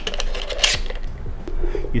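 A camera being seated onto the quick-release plate clamp of a DJI RS2 gimbal: a few sharp clicks and a short scrape of the parts coming together, the loudest click just over half a second in.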